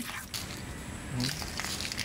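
A spoon stirring a creamy flaked-fish salad in a small stainless steel bowl: wet, irregular squishing and light scraping. A brief vocal sound cuts in a little past the middle.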